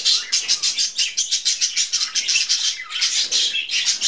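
Budgerigars chattering: a rapid, unbroken run of short high chirps and warbles, several a second, easing briefly about three seconds in.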